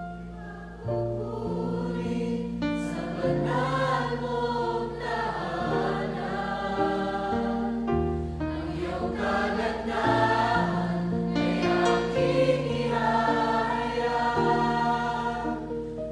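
Tagalog praise-and-worship song: voices singing in chorus over instrumental accompaniment with sustained bass notes.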